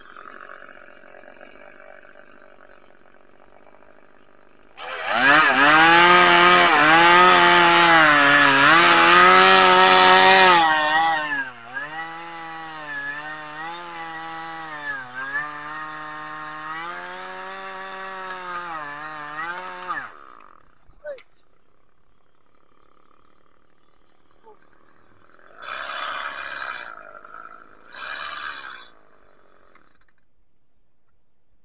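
Two-stroke top-handle chainsaw cutting into a tree trunk at full throttle for about six seconds. It then runs on at lower, wavering revs for about nine seconds before the engine stops.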